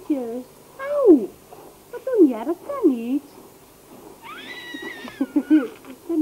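A baby cooing and squealing back and forth with a woman's high, sing-song baby talk: several swooping coos in the first three seconds, then a long high-pitched squeal about four seconds in.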